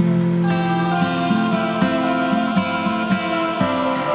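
Acoustic guitar music, one note or chord giving way to the next every fraction of a second.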